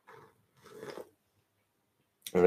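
A person sipping a drink from a mug and swallowing: two faint short mouth sounds, the second, a little louder, just over half a second in.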